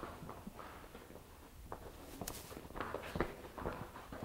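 Faint, irregular footsteps of a man and the hooves of a young horse walking on a barn aisle floor: a few scattered steps and knocks.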